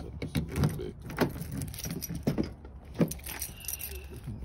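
Irregular clicks and light rattles, about six over a few seconds, over a low steady hum.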